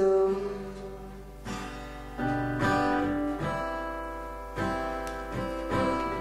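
Live band music between sung lines: acoustic guitar chords struck and left to ring, after the last sung note fades out right at the start.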